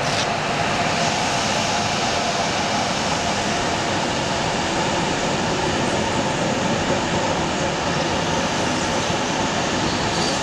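Berlin U-Bahn train running past on elevated tracks: a steady, unbroken noise of wheels on rails and the moving cars.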